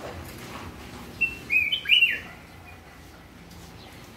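A caged cang jambul, a crested bulbul-type songbird, sings one short whistled phrase of a few quick notes about a second in, the last note sliding up and then down.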